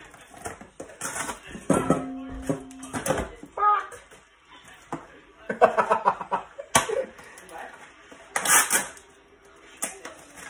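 Plastic wrap crinkling and tearing as it is pulled off a white tray of ground pork, then the meat is emptied and scraped into a stainless steel bowl, with a few sharp clicks. A man laughs in between.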